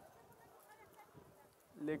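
Near silence: faint outdoor background with a couple of faint short sounds near the middle, then a man's voice starts speaking in French near the end.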